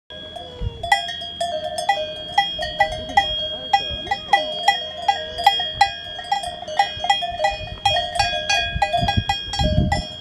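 Cowbells on grazing cattle clanking irregularly, several bells at once, a few strikes a second, their rings overlapping.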